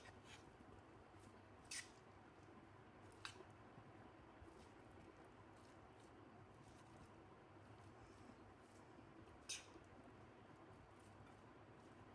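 Near silence with a few faint, short clicks of a metal spoon against a bowl as shredded vegetables are stirred together.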